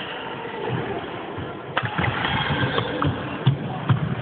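Badminton doubles play on an indoor court: sharp racket hits on the shuttle, one about two seconds in and two in quick succession near the end, with shoes squeaking on the court floor and footsteps thudding between them.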